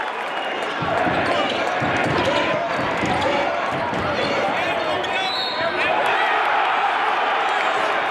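A basketball dribbled on a hardwood court, bouncing repeatedly from about a second in, over arena crowd noise and voices.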